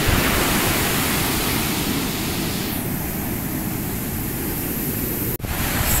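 Steady rush of ocean surf breaking on a sand beach, with a rumble of wind on the microphone. The sound cuts out for an instant shortly before the end.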